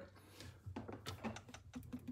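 Faint, irregular clicks and small rattles of a USB-C cable plug being handled and pushed into a port on the front of a portable power station.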